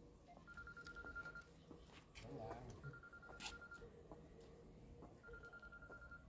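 Faint telephone ringing: a rapidly pulsed electronic tone of about a second, heard three times, roughly every two and a half seconds.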